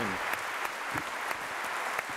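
A large theatre audience applauding steadily.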